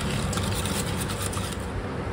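Wire whisk beating a liquid egg-and-milk mixture in a stainless steel pot: a steady scraping with fine rapid clicks of wire against metal.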